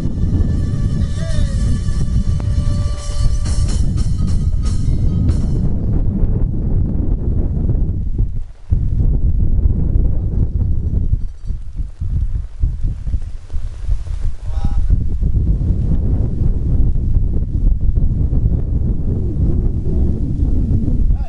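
Chindon band music, a pitched melody over a beat, heard for about the first five seconds and then stopping. Wind and heavy rain buffet the microphone throughout as a loud low rumble.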